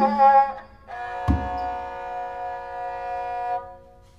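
Thai three-stringed bowed fiddle (so sam sai) playing a slow phrase: a short note, then one long held note that stops shortly before the end. A low thump falls about a second in.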